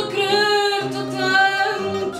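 A woman singing fado, holding long, wavering notes, with Portuguese guitar and fado viola (classical guitar) accompaniment softer underneath.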